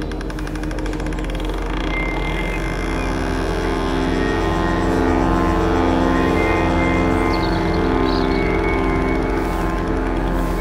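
Psybient electronic music: layered sustained synth pads over a low drone, slowly building, with a soft pulse repeating a little under once a second. A few short high chirps come in about three-quarters of the way through.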